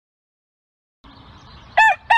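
Silence for about a second, then faint background hiss and a rooster starting to crow near the end: a short call, then the start of a longer one.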